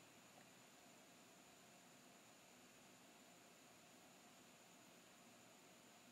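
Near silence: a faint, steady hiss with a thin high tone running through it.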